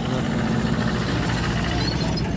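Vehicle engines running in slow road traffic, a steady low hum.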